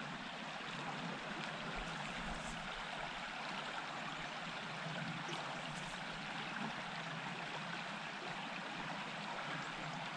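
Small rocky creek running: a soft, steady rush of water over stones.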